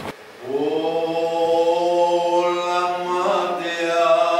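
A choir holding long, steady sung notes that start just after a brief drop at the beginning, with higher voices joining about two and a half seconds in.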